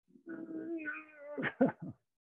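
A man's drawn-out strained groan held on one pitch for about a second, breaking into short bursts of laughter near the end, as he struggles through the last push-ups of a set.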